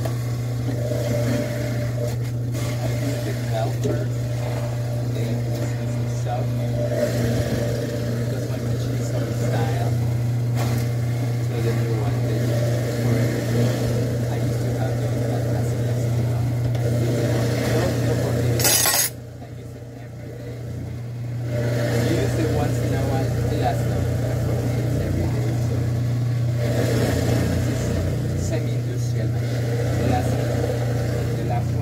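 Horizontal masticating juicer running with a steady low motor hum as produce is pushed down the chute and ground by the auger. About two-thirds of the way through there is a sharp click and the sound drops away for a couple of seconds before the juicer runs again.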